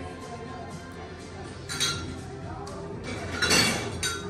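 Background music playing in a bar, with glassware clinking. There is a short burst of sound about two seconds in and a louder one near the end.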